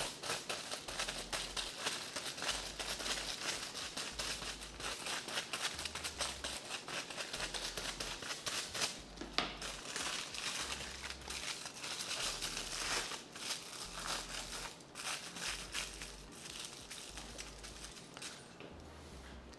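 Aluminium hair foil crinkling and rustling as sheets are handled and folded during foil highlighting, with a tint brush scraping across the foil, in a continuous run of quick rustles that gets quieter near the end.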